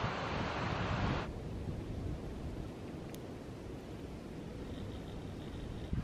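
Wind buffeting the microphone, a rushing noise that drops abruptly about a second in to a quieter low rumble.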